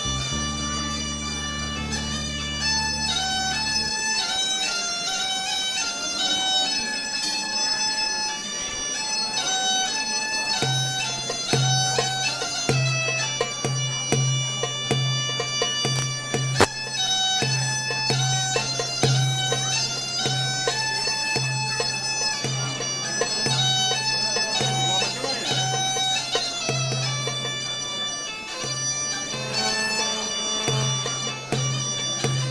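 Thracian gaida, a bagpipe with a goatskin bag, playing a lively melody of short stepping notes. From about ten seconds in, a deep note joins in repeated held pulses under the tune.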